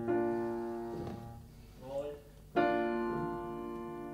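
Indie pop song opening on piano chords: a chord struck at the start rings and slowly fades, and a second chord comes about two and a half seconds in. A short sliding voice-like sound falls between them.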